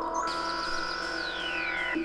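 Minimal house track: layered, sustained electronic tones, with a high tone that comes in early and slides steadily down in pitch through the second half.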